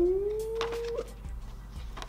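A man's drawn-out, rising "ooh" of anticipation, held and cut off about a second in, followed by faint rustling.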